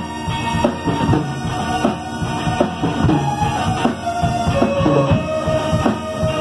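Live rock band playing: drum kit beating steadily under bass and electric guitars.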